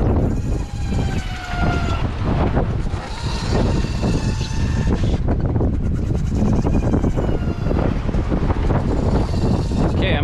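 Wind buffeting the microphone aboard a small sailboat under way at sea, a loud steady rush. Faint high whistling tones drift slowly down in pitch during the first few seconds.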